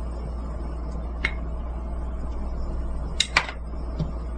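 Small ceramic dishes tapping lightly as they are handled on a table: a faint tap about a second in and a sharper double click a little after three seconds, over a steady low hum.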